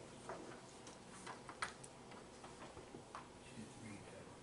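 Faint room tone with a few scattered, irregularly spaced small clicks and taps.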